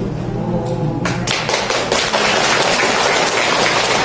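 Audience applauding: many hands clapping, breaking out about a second in and carrying on steadily.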